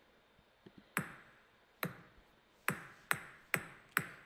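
Count-in of a percussion play-along track: six short pinging clicks that ring briefly, two slow ones and then four quicker ones, counting the players in to the beat.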